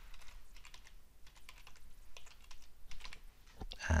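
Typing on a computer keyboard: a run of faint keystrokes as a single word is typed out.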